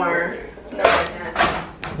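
Indistinct voices talking, with handling noise and a short knock near the end.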